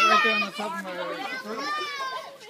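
Excited children's voices calling out and chattering over one another, high-pitched, with adult voices mixed in.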